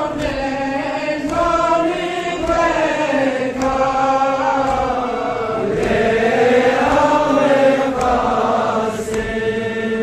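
A man chanting a Balti noha, a Shia mourning lament, through a microphone in long held melodic lines. The chant swells louder between about six and eight seconds in.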